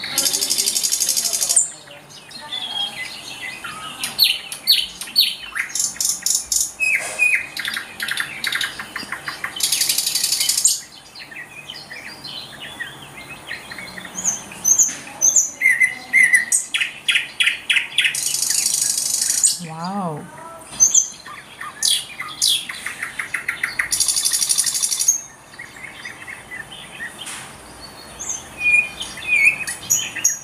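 Nightingale singing: a varied song of separate phrases, with loud fast rattles, runs of rapidly repeated notes and short whistles, broken by brief pauses.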